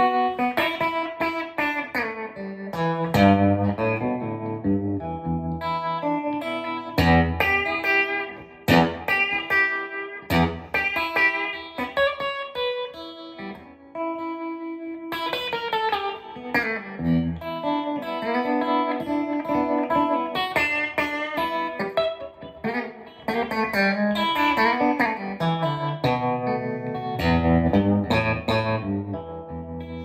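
Solo electric guitar from a Telecaster with modified Broadcaster blend wiring, played through a Headstrong Lil' King amp: single-note lines and chords, with a few brief pauses.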